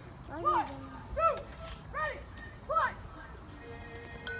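A voice shouting a count-off before the band starts: four short calls at an even beat about three-quarters of a second apart, each rising and then falling in pitch. A sustained musical note comes in near the end.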